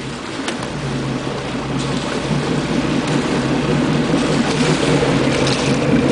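A boat's engine idling with a steady low hum, under an even wash of wind and water noise.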